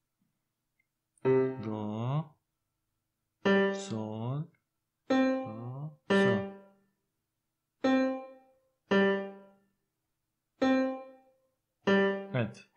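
Finale 2014's built-in piano sound playing back each note as it is typed into the score: about eight separate piano tones, each struck and fading out, one every second or two.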